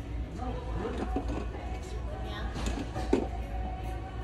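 Indistinct voices talking at a distance over background music and a steady low hum, with one sharp knock about three seconds in.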